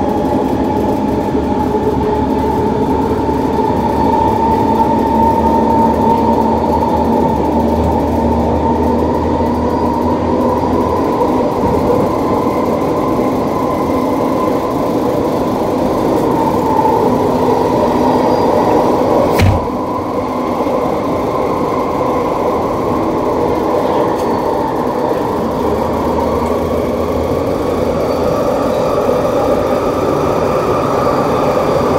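Interior running noise of a 1984 UTDC Mark I SkyTrain car in motion, driven by linear induction motors: a steady rolling rumble with a whine that rises a little in pitch early on and again near the end. A single sharp knock about two-thirds of the way through, after which the running noise drops slightly.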